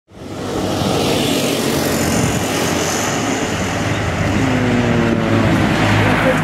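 Motor vehicle engine running in street traffic, a steady drone that fades in at the start and dips slightly in pitch near the end.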